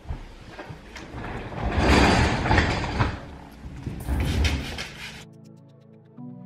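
Rustling, rubbing handling noise with low bumps from a hand on the camera close to the microphone, loudest about two seconds in. About five seconds in it cuts to background music with steady held tones.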